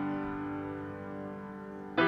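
Slow piano introduction to a worship song: a held chord rings and slowly fades, and the next chord is struck right at the end.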